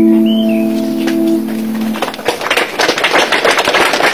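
A male voice holds the last note of the song over the acoustic guitar, and it ends about two seconds in. Then the listeners clap, with birds chirping faintly near the start.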